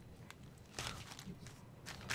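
Clear plastic bag crinkling and rustling as it is handled, faint, with a brief louder rustle a little under a second in and another near the end.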